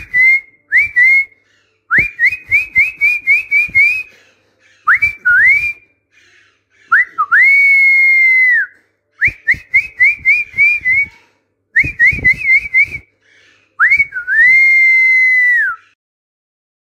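A person whistling a short tune over and over as a model for parrots to copy. Runs of quick rising chirps alternate with a long held note that bends down at its end, and the pattern comes round about twice.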